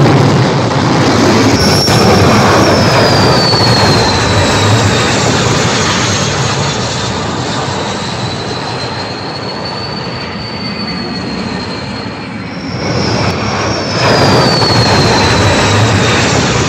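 Vought F-8 Crusader's J57 turbojet at full power during carrier catapult launches: a loud rushing roar with a high whine that drops in pitch, once about two seconds in and again near the end. The roar eases off in between and swells up again before the second whine.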